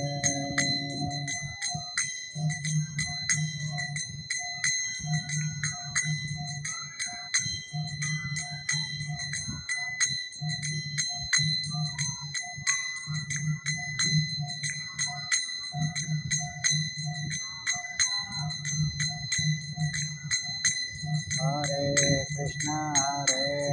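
Karatalas, small brass hand cymbals, struck in a steady rhythm of about three strikes a second and ringing on between strikes, over a low pulsing accompaniment about once a second, in an instrumental break of kirtan chanting. Singing trails off about a second in and comes back right at the end.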